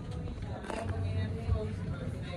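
Indistinct voices of passengers over a steady low hum inside an elevator car.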